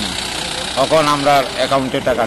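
A truck engine running in the background, a low steady sound, with a man's speech coming in over it about a second in.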